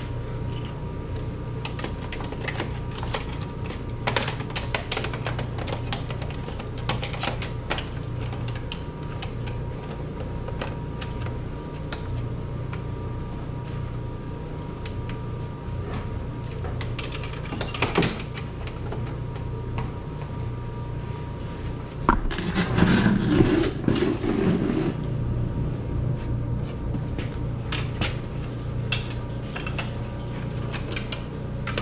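Light metal clicks and clinks of hand tools being worked at an ATV's front suspension, over a steady low hum. A louder scraping, rattling stretch lasts about three seconds past the two-thirds mark.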